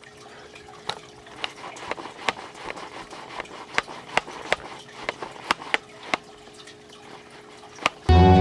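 Aquarium water trickling from a hang-on-back filter, with irregular sharp drips and splashes over a faint steady hum.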